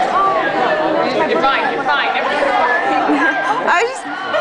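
Chatter of many young voices talking over one another, no single voice standing out.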